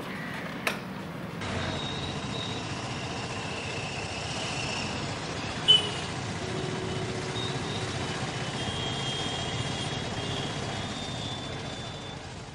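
Steady street background noise, a traffic-like hum, with a small click near the start and one short, sharp knock about six seconds in.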